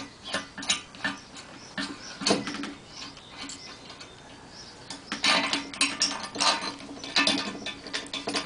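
Metal clicks and scrapes of a spanner working the nut on a threaded stud, drawing a greased seal into the steel bearing housing of a swinging arm. The clicks come irregularly, busier in the second half.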